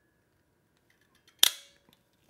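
Grey Cobratec King Cobra out-the-front knife snapping its spring-driven blade back into the handle. One sharp metallic snap about one and a half seconds in, with a short ringing tail.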